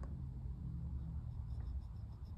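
Faint scratching and tapping of a Goojodoq GD12 stylus's plastic tip dragged across an iPad's glass screen in quick zigzag strokes, with the pen held at a tilt, over a low steady hum.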